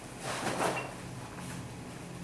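Backpack straps and fabric rustling as a backpack weighted with 25 lb of plates is pulled onto the shoulders: one brief rustle about half a second in.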